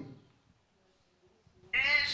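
A high-pitched voice trails off, then a pause of near silence, then a voice starts again near the end.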